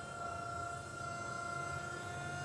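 New Holland 75-horsepower electric tractor's electric motor and hydraulic pump running with a steady high whine as the front loader is lowered. The hydraulics run continuously whenever the tractor is powered on.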